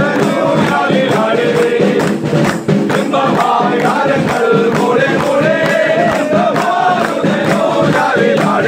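A group of men singing a Christmas carol together, with rhythmic hand clapping on the beat.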